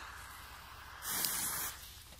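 A firecracker fuse, lit with a lighter, catches and hisses: after a faint first second, a bright sputtering hiss lasts a little under a second.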